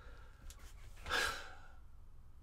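A short breathy sigh from a man about a second in, over a faint low room hum.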